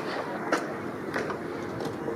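Steady outdoor background noise of a sports ground, with three faint light clicks spaced about two-thirds of a second apart.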